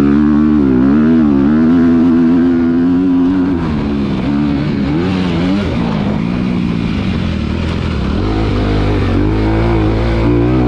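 Motocross bike engine revving under the rider's throttle, its pitch rising and falling again and again; past the middle it drops lower and steadier for a couple of seconds, then picks up again near the end.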